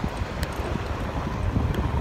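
Wind buffeting the microphone of a camera riding on a moving BMX bike: a low, unsteady rumble, with a couple of faint clicks about half a second in.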